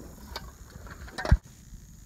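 Handling noise from a phone camera being moved: a few light clicks, then a sharper knock with a low thump about a second and a quarter in.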